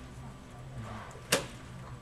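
A single sharp click about a second and a half in, over the low steady hum of a lecture room's sound system.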